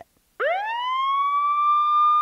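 A siren winding up about half a second in: one tone that rises quickly from low to high, then holds a steady high pitch.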